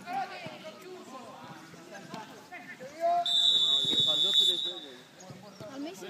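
A referee's whistle blown in one steady, shrill blast lasting about a second and a half, about three seconds in, signalling the free kick. Faint players' voices are heard around it.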